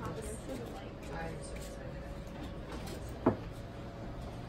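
A single sharp knock about three seconds in as a plastic seedling tray with a clear dome is set onto a mini-greenhouse shelf, over faint background voices and a low steady hum.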